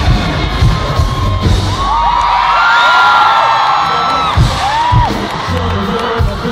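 Live concert sound through a phone's microphone: an R&B/hip-hop track with heavy bass over the arena PA, and the crowd screaming and whooping. The bass drops out about two seconds in, leaving the crowd's high screams on top, then comes back near the five-second mark.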